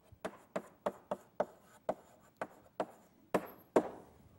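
Chalk writing on a blackboard: a quick run of sharp chalk taps and strokes, about three a second, with the two loudest strikes near the end.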